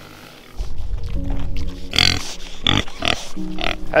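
Pigs grunting, several short calls, over background music with sustained notes.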